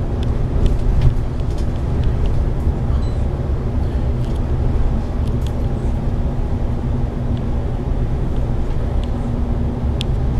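Engine and road noise of a Volvo B9TL double-decker bus cruising, heard from inside the upper deck: a steady low drone with a faint continuous hum above it and scattered light rattles and clicks.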